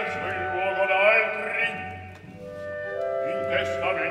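Live operatic baritone singing with wide vibrato over a small orchestra. About two seconds in the voice breaks off and woodwinds hold steady sustained notes, and the singing comes back in near the end.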